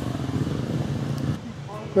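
5th-gen Toyota 4Runner driving slowly on a dirt trail, heard from inside: a steady low engine hum with tyre and road noise, which drops away about one and a half seconds in.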